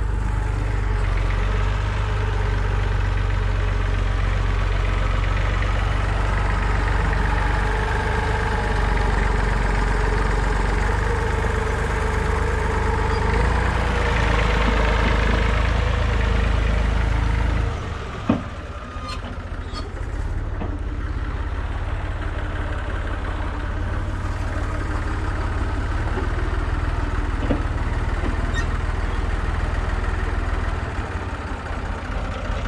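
A motor idles steadily. About eighteen seconds in, the sound changes abruptly and drops in level with a single sharp click. After that an idling diesel engine, the IMT 539 tractor's three-cylinder, runs on steadily and more quietly.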